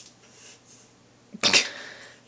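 A boy sneezing once: a sudden loud burst about one and a half seconds in that tails off quickly. A short click comes at the very start.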